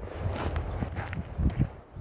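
Several people walking through snow, their footsteps crunching irregularly.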